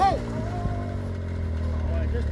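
A low, steady motor hum, with faint voices over it.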